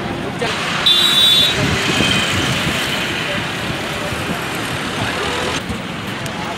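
Highway traffic rushing past, with a vehicle horn honking about a second in and a fainter horn soon after.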